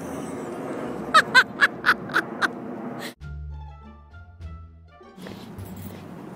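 Outdoor background noise with a quick run of about six short, sharp cries, the loudest sounds here. Then a sudden cut to background music with sustained low notes for about two seconds, before the outdoor noise returns.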